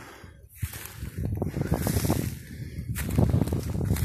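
Footsteps crunching through dry leaf litter and sticks: an irregular run of crackles and snaps that grows louder about a second in.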